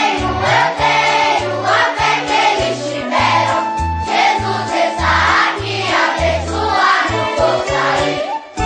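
Children's choir singing a Portuguese gospel song over an instrumental backing track with a steady, rhythmic bass line.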